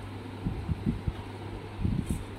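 Soft, short knocks of objects and hands being handled on a child's desk, about five in two seconds, over a steady low hum.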